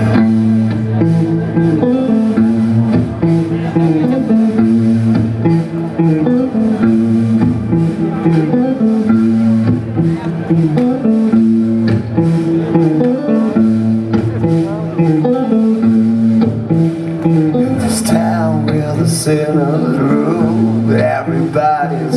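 Live blues-rock band playing: electric guitar and bass guitar working a repeating low riff over a steady drum beat.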